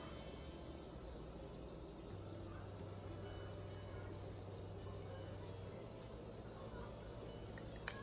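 Faint room tone: a low, even hiss with a steady low hum that comes in about two seconds in and stops just before the six-second mark.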